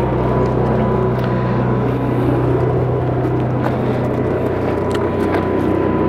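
A steady low mechanical drone, an unseen engine or machine running, with a faint constant high whine above it.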